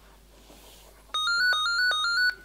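Mobile phone ringtone: a loud electronic trill, flicking quickly between two close pitches, starting about a second in.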